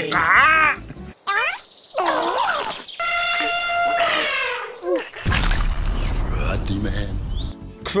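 Laughter, then comic sound effects of a made-up creature: bending squeals, a held honk about three seconds in, falling shrieks, then a low rumble for the last couple of seconds.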